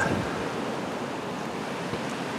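Steady, even rushing hiss of background noise with no distinct sounds in it.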